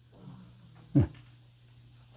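A man's short 'mm' (응) with falling pitch about a second in, over a low steady hum; otherwise quiet.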